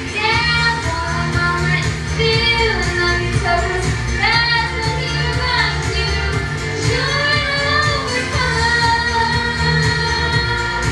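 A young girl singing a Christian pop song into a handheld microphone over a recorded backing track, her voice sliding between long held notes.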